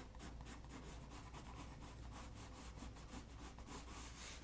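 Pencil shading on drawing paper: faint, quick back-and-forth strokes, about five a second, laying in a dark tone.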